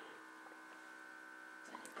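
Faint steady electrical hum over quiet room tone, close to silence.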